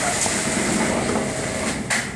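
Steady factory machinery noise from a flexible-duct compressing and packaging line, with a short, sharp burst of noise just before the end.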